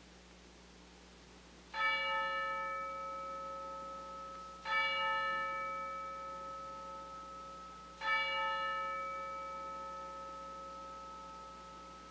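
A bell struck three times, about three seconds apart, on the same note each time, each ring fading slowly.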